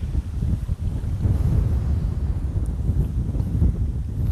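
Strong wind buffeting the microphone: a loud, uneven low rumble that gets a little louder about a second in.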